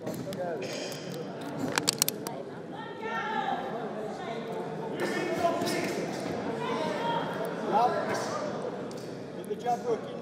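Shouting from the crowd and corners in a boxing hall, with a quick run of sharp glove smacks about two seconds in and another couple of smacks near the end.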